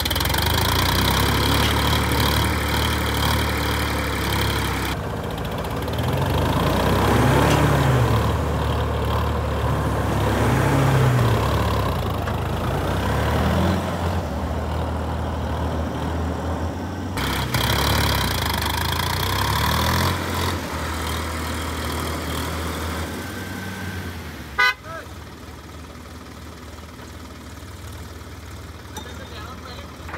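Tractor diesel engine and a stuck SUV's engine running hard under load while the tractor tows the SUV through deep mud, revving up and down several times. The engine sound drops off sharply after a knock about 25 seconds in.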